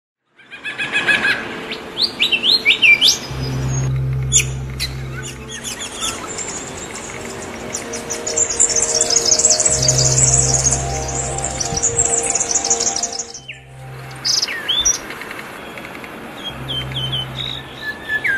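Birds chirping and singing, many short calls overlapping, with a fast high-pitched trill running from about eight to thirteen seconds in. Soft background music with long, low held notes plays underneath.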